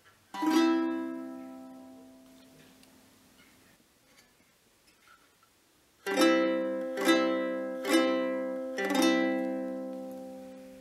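Six-string early medieval lyre strummed on a C chord, the other strings blocked by the fingers so only the open G, C and E ring. One strum about half a second in rings and fades over a few seconds; after a pause, four strums follow about a second apart near the end.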